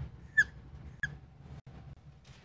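Dry-erase marker squeaking on a whiteboard while a heading is written and underlined: two short, high chirps, about half a second apart.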